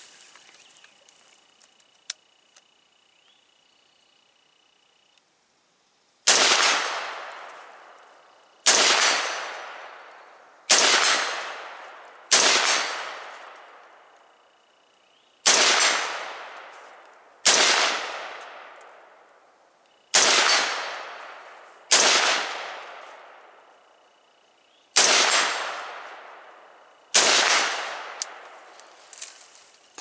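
AR-style rifle firing ten aimed shots of 55-grain full metal jacket ammunition, about one every two seconds, starting some six seconds in. Each shot trails off in a long echo.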